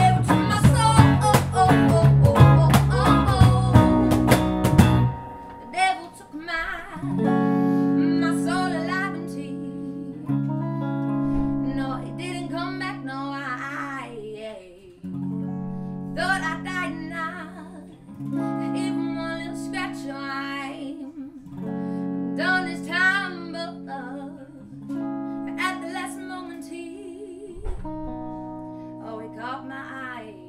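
Live band music: electric guitar, bass and sharp percussive hits playing loudly, then dropping after about five seconds to a quiet passage of held electric guitar chords with a woman's voice singing in short phrases over them.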